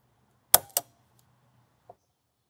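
Glazier's point driver firing a diamond-point glazing point into a wooden window sash: a sharp snap about half a second in, then a second click a quarter second later, and a faint tick near the end.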